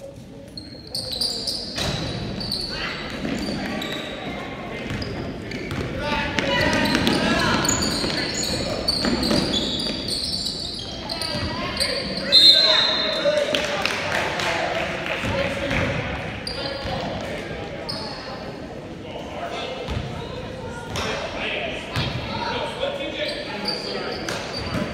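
Basketball bouncing on a hardwood gym floor amid spectators' voices, echoing in the large hall, with a sudden louder sound about halfway through.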